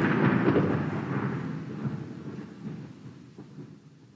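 A rolling rumble of thunder, fading out steadily, with a few faint crackles as it dies away.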